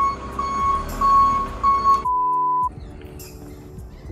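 Short, high electronic beeps repeating every few tenths of a second over low traffic rumble. About halfway through they give way to one loud, steady beep of under a second that starts and stops sharply and blanks out all other sound. Quieter background music follows.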